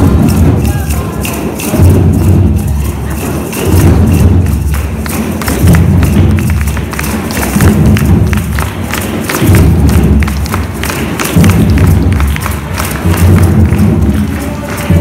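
A large group playing hand drums together in a Haitian rara rhythm. A deep, low booming note returns about every two seconds over dense, rapid hand strikes.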